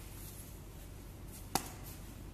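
A braided rope being handled on a hard floor: faint rustling, and one sharp tap about one and a half seconds in.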